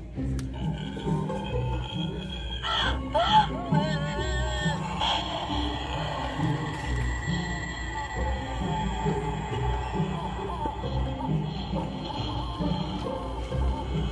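Eerie sound effects from a Halloween crystal-ball decoration set off by its try-me button, with wavering, gliding tones about three to five seconds in, over in-store background music with a steady beat.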